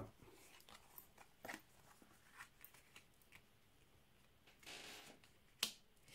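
Faint rustles and light ticks of tarot cards being laid down and turned over on a cloth-covered table, with a sharper click near the end.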